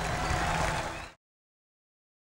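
Audience applause over the last ringing of the band's final chord, led by a Galician gaita, fading; the sound cuts off abruptly about a second in, leaving total silence.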